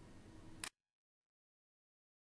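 Near silence: the gap between two tracks of a mixtape. The last faint remnant of the previous track dies away, a small click sounds just under a second in, then the sound cuts to dead silence.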